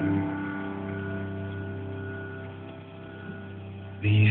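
Piano chord left ringing and slowly dying away, with a faint extra note about three seconds in.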